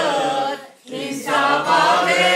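A small group of men singing an Armenian song together, unaccompanied. The voices break off briefly just under a second in, then come back in louder.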